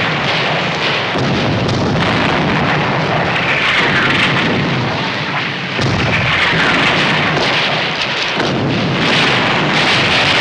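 Artillery barrage on a film soundtrack: a continuous din of shellfire and explosions, with a falling whistle every few seconds.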